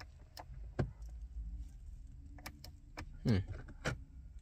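A few sharp, irregular clicks from a car's dashboard hazard-light switch being pressed, with no flasher ticking after them: the hazards don't come on because the ignition is off.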